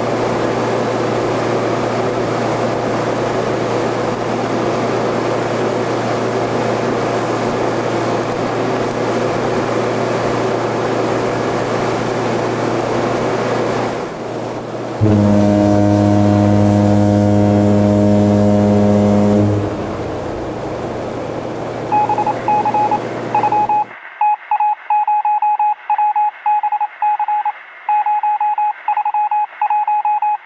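Tug's engine running with water rushing past, then, about halfway through, one loud long horn blast of about four and a half seconds. After a short pause comes irregular, rapid on-off electronic beeping.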